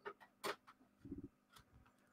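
Near silence with a few faint, brief clicks, about half a second apart, and a short faint low sound about a second in.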